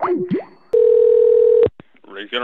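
A steady telephone line tone, one unbroken pitch lasting about a second, that cuts off suddenly. Just before it comes a brief gliding voice sound.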